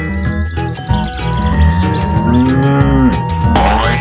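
A cow mooing: one long moo that rises and falls in pitch about two seconds in, over background music.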